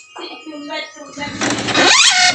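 Epson L3110 inkjet printer starting up at power-on: a quieter mechanical whir, then about a second in a loud, shrill noise with rising pitch sweeps. This noise is the fault being diagnosed, which the repairer puts down to the hardware (mechanism) rather than software.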